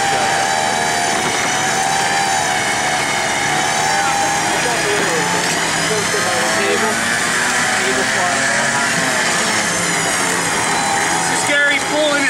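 A vehicle winch reeling in its cable under heavy load as it drags a stuck Jeep out of the mud: a steady, loud whine whose pitch wavers with the strain, breaking off shortly before the end.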